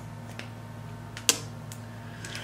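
A steady low electrical hum with a few small clicks: a faint tick early, one sharp click just past halfway, and another faint tick soon after.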